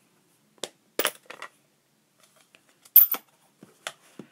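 A scattering of short, sharp hard-plastic clicks and taps, the loudest about three seconds in: a clear acrylic stamp block and a plastic ink pad case being handled while a rubber stamp is inked on the ink pad.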